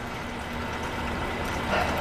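Steady low background rumble with a faint constant hum, like an idling engine.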